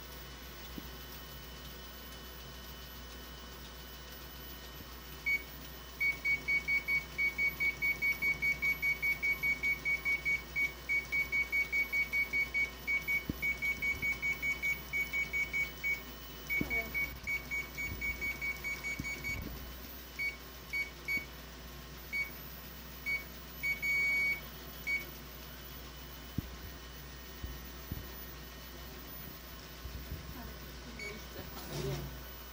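Ricoh MP C copier's control panel beeping as its touchscreen keys are pressed repeatedly: a fast run of short, high beeps, about four a second, lasting some thirteen seconds. Then come scattered single beeps, one of them longer.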